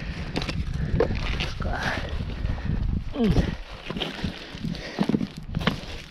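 Scuffs and clacks of beach pebbles and boulders underfoot, with a low rumble on the microphone in the first half. A man gives a short falling grunt about three seconds in.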